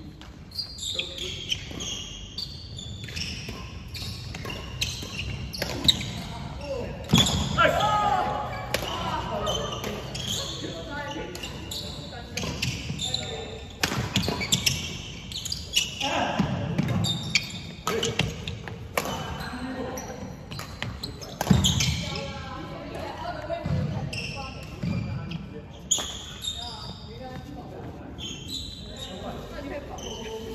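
Badminton rally on an indoor wooden court: rackets strike the shuttlecock again and again with sharp hits, and shoes squeak and thud on the floor, all echoing in the large hall. Players' voices are heard now and then.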